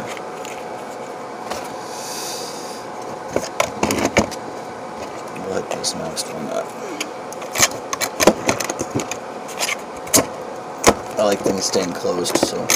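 Handling noise: a small nylon kit pouch is closed and set down, then a series of sharp clicks and knocks as a stainless steel cook pot and its lid are picked up and handled, with a voice starting just before the end.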